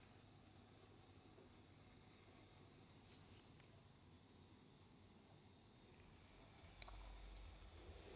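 Near silence: faint room tone with a couple of faint ticks, about three seconds in and near the end.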